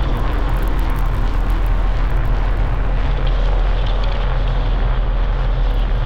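Electronic music played live from a laptop with a pad grid controller: a steady deep bass drone under a dense, hiss-like noisy texture, with a few faint high ticks.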